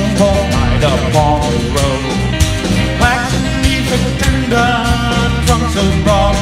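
Live folk-rock band music: drum kit, bass, acoustic guitar and electric guitar playing a steady country-rock groove, with a melody line bending over the top.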